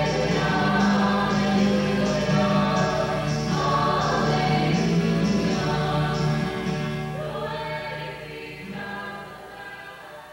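Choir singing sacred music with a sustained, chord-like sound, fading out over the last few seconds.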